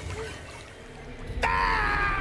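A quiet stretch, then about one and a half seconds in a person's voice lets out a long, high-pitched cry.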